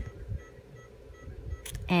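Quiet scraping and handling sounds of a steel sickle scaler working calculus off a dog's teeth, over a steady low hum, with faint short beeps repeating at even intervals.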